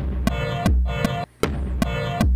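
Programmed beat playing back: a church-bell synth pad striking short chords about twice a second, here landing on the beat, over kick drum and hi-hat ticks.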